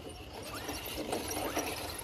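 Radio-controlled rock crawler creeping down bare rock: faint tyre scuffs with a few small clicks.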